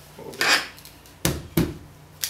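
PVC conduit 90-degree elbows being pushed and fitted together by hand: a scraping rub of plastic on plastic about half a second in, then two sharp plastic knocks a little after a second.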